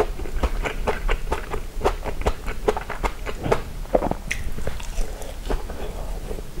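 Close-miked chewing and biting of soft onion omelette: a quick, uneven run of small wet mouth clicks and smacks, several a second.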